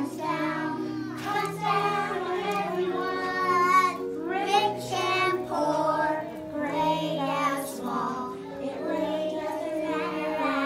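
A group of preschool children singing a song together in unison. Instrumental accompaniment holds steady notes underneath, changing every second or so.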